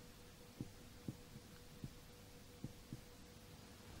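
Near silence: a faint steady hum, broken by five or six faint soft taps of a marker on a whiteboard as it writes.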